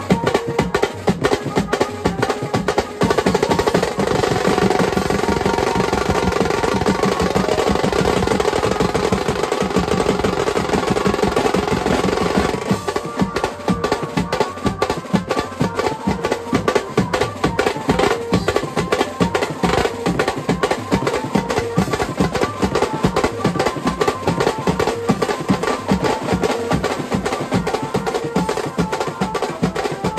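Banjo-party band playing a fast dhammal beat: many snare drums, a big bass drum and cymbals pounding out a dense rhythm, with a melody line carried over the drums. The fullest part of the sound thins a little about halfway through.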